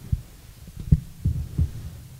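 Handling noise from a handheld microphone: a string of irregular low thumps and rumbles, about half a dozen in two seconds.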